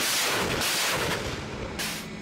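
Salvo of rockets launching from a BM-21 Grad truck-mounted multiple rocket launcher: a loud, continuous rushing noise that fades after about a second and a half, with one more short rush near the end.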